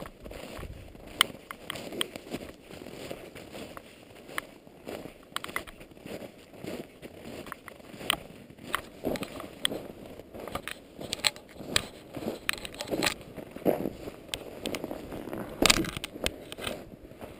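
Footsteps crunching in dry, frozen snow, an irregular run of crunches, heard muffled through a GoPro's internal microphone inside its housing.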